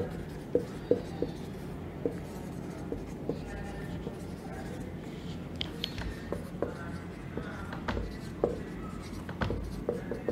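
Felt-tip marker writing on a whiteboard: short, irregular taps and strokes of the tip as words are written.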